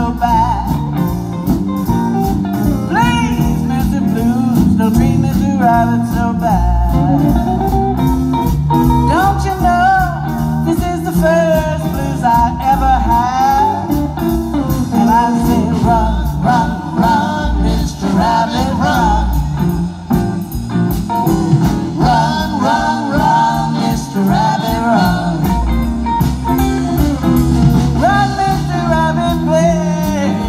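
Live blues band playing: electric guitars, electric bass, drum kit and saxophone, with a lead line that bends in pitch over a steady beat.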